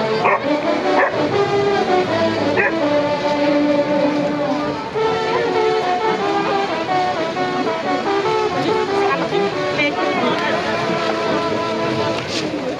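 A pack of foxhounds baying in long, overlapping howls, with a few sharp yelps near the start, as they crowd and squabble over fresh rumen.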